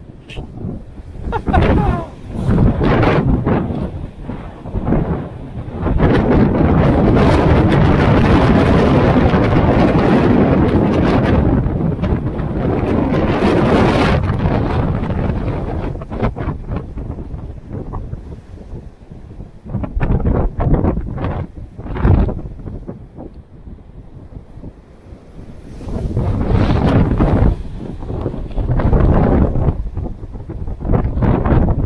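Strong, gusty wind buffeting an action camera's microphone as a rumbling roar, with one long, loud gust in the middle lasting several seconds, over heavy surf breaking on the rocks below.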